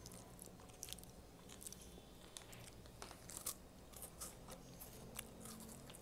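A person chewing crackers spread with garlic cream cheese: faint, irregular crunching clicks.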